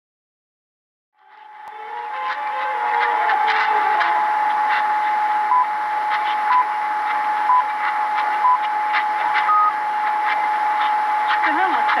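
Distant medium-wave AM station fading in about a second in through hiss and crackling static, with a steady whistle under it. About halfway through come four short pips a second apart and then a higher final pip: the station's time signal. A voice begins near the end.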